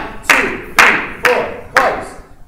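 Hand claps keeping a steady marching tempo, about two a second, four sharp claps each ringing briefly in a reverberant room.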